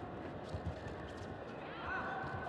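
Bare feet stepping and stamping on a judo tatami mat during a grip fight: a few irregular dull thumps over the murmur of the hall, with a shout rising near the end.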